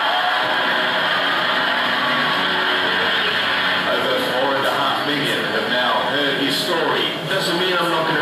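Soundtrack of a projected video playing over room loudspeakers: continuous background music with indistinct voices.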